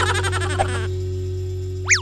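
Animated-outro sound effects over a sustained music bed. High-pitched cartoon laughter chatters for about the first second, then near the end a quick whistle-like glide rises and falls once.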